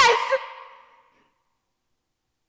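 A woman's voice ending a word and trailing off over about a second, then dead silence.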